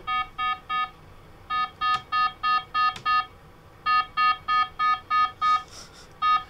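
Babytone baby sleep monitor's high pulse alarm: a rapid electronic beeping, about four beeps a second in runs of several, with short pauses between runs. It is set off by the baby's normal pulse being above the alarm's high-pulse setting.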